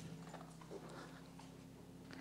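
Very quiet room tone with a faint steady hum, in a pause between speech.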